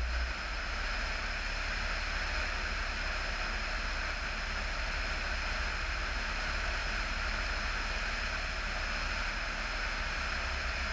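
Steady rushing wind noise from airflow over a camera mounted on the tail of a motor glider in flight, with a low rumble that eases slightly about a third of a second in.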